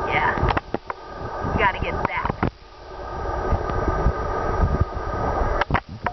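Short snatches of a girl's voice, then a few seconds of low rumbling and rustling noise on the microphone as the handheld camera is moved about, with a few sharp clicks near the end.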